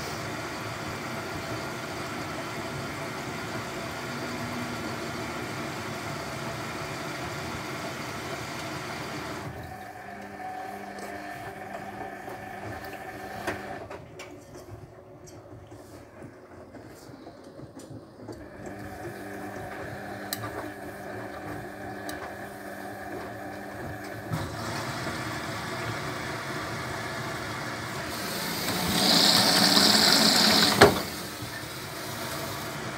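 Hotpoint WF250 front-loading washing machine running early in a wash cycle: a steady hum as the drum turns the wet load, going quieter for a stretch in the middle. Near the end, water rushes in loudly through the detergent drawer as the machine fills.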